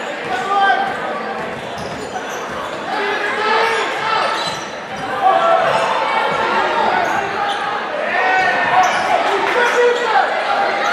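Basketball being dribbled on a hardwood gym floor, the bounces echoing in a large gym over many overlapping voices of players and spectators.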